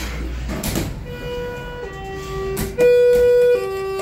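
Elevator's electronic arrival chime: a steady two-tone high-low signal, starting about a second in and sounding high-low twice, the second high tone the loudest. It signals the car reaching the floor.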